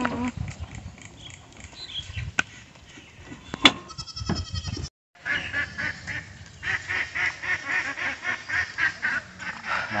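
Ducks quacking in a fast, continuous run of nasal calls through the second half. Before that, scattered clicks and knocks, with one sharp click at about three and a half seconds in, and a short break to silence just before the quacking starts.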